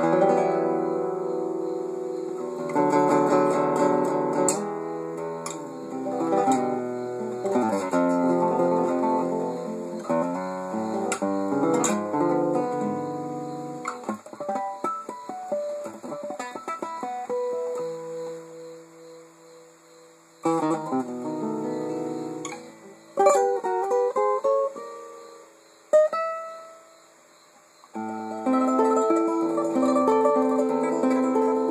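Japanese-made Takamine CP132S nylon-string classical guitar played unplugged by hand, its acoustic sound only: chords and melody notes ringing out. The playing thins out past the halfway mark, with a couple of brief pauses, and fills out again near the end.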